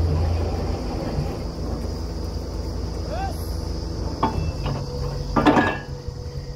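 Borewell drilling rig's engine running low and steady, under a steady high-pitched buzz, with a metal clank about four seconds in and a louder ringing clank near the end.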